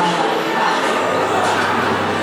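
Busy indoor store ambience: a steady murmur of indistinct voices over general room noise.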